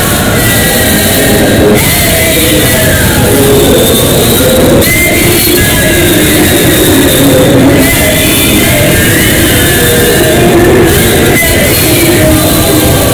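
A group of boys singing together into microphones, amplified through a PA system; loud and steady, with sustained sung notes.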